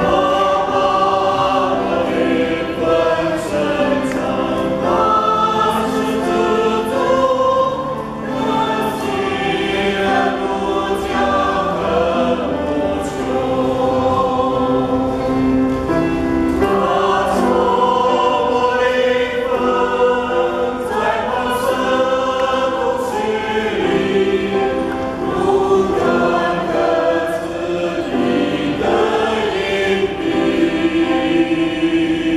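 Mixed church choir of men and women singing a hymn in Hakka Chinese, in sustained, continuous phrases.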